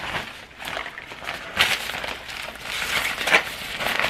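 Rustling of a black fabric drawstring bag being opened and handled, with louder bursts of rustling about a second and a half in and again just after three seconds.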